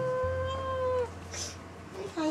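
A domestic cat meowing: one long call held at a steady pitch that dips and ends about a second in.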